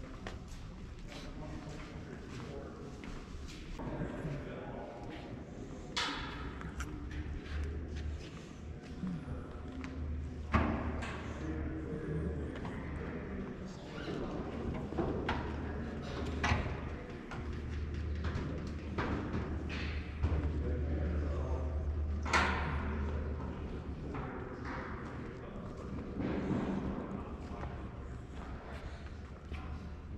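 Large hangar room tone: a low steady hum with faint voices, and scattered knocks and thuds. The sharpest knocks come about a third of the way in and again about three-quarters of the way in.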